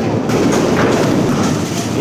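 Steady, loud rumble of a busy candlepin bowling alley, with balls rolling down the wooden lanes.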